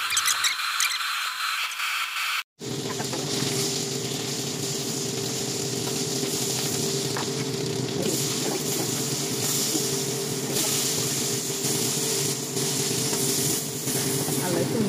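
Hot oil sizzling steadily in a frying pan as sliced sausage and onion fry, with a steady hum underneath. The sound cuts out abruptly for a moment about two and a half seconds in.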